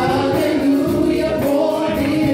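A gospel vocal ensemble of men and women singing in harmony into microphones.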